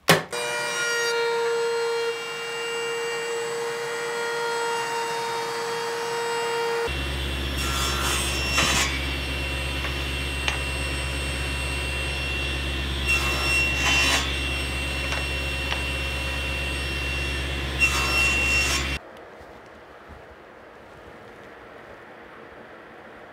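Table saw running with a steady deep hum and a high whine, flaring up briefly three times as it cuts wood, then cut off abruptly near the end. Before it comes a sharp click, then about seven seconds of a steadier power-tool sound with several fixed pitches.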